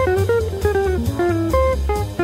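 Background library music: a plucked guitar melody in short stepping notes over bass guitar and a light drum kit.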